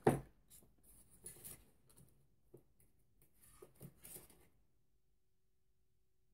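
Faint rustling and light taps of small reloading-kit pieces being handled on a bench, coming in a few short bunches.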